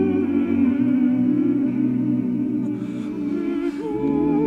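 Vocal octet singing a cappella in sustained close-harmony chords with vibrato. The lowest voice drops out about a second in, and a new phrase begins near the end.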